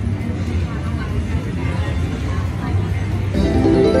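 Wonder 4 Boost Gold slot machine running a spin on its four Pompeii Gold screens, with its reel sounds over a steady low background hum, then a short tune of pitched tones near the end as the reels stop on a small win.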